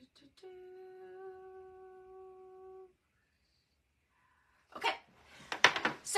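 A woman humming one steady note for about two and a half seconds. Near the end come a string of knocks and rustles as the phone filming her is handled and moved.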